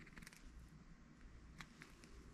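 Near silence: room tone with a few faint, short clicks of a dental handpiece and its bur being handled.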